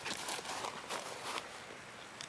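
Footsteps on dry grass, a few quick steps moving away that fade out after about a second and a half.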